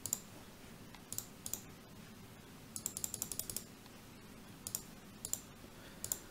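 Faint clicking of computer keys in a few short runs, the quickest run of about eight clicks near the middle.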